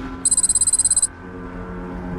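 A rapid, high-pitched electronic beeping trill lasting under a second, over low sustained background music tones.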